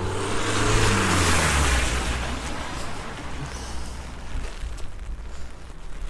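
A car passing on a wet road: engine hum and tyre hiss swell to a peak about a second in, then fade away.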